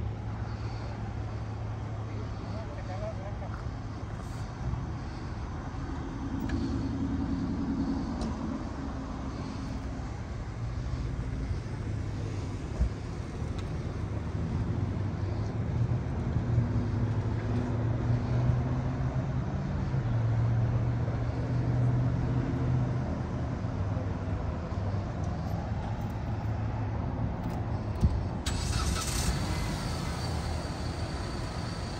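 Vehicles running at a roadside traffic stop, giving a steady low hum with passing road traffic. Indistinct voices come and go underneath, and there are two brief knocks, one near the middle and one near the end.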